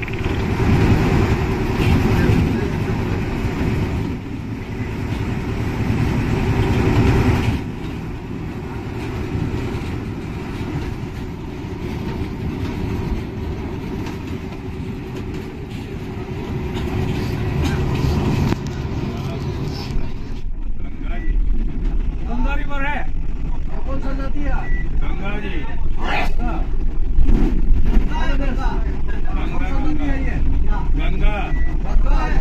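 Inside a moving passenger bus: engine and road rumble mixed with the chatter of many passengers. About two-thirds of the way through, the sound changes suddenly to a deeper, heavier rumble with a few single voices standing out above it.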